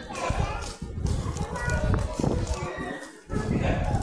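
Voices of people nearby, children among them, chattering and calling out, with low bumping noise on the phone's microphone as it is carried.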